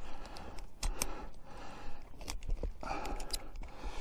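Scattered small clicks and rustles of climbing gear being handled on a rope: a foot ascender being clipped back onto the rope higher up. Two short stretches of hiss, near the start and about three seconds in.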